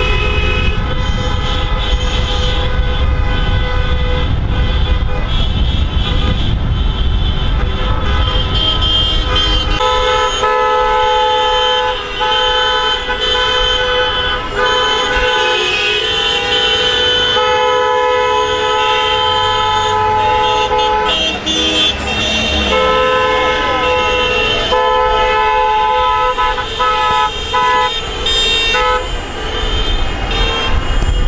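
Several car horns honking at once in long, overlapping blasts that stop and start again and again, from a celebrating car convoy. Low engine and road rumble lies under the horns for roughly the first ten seconds.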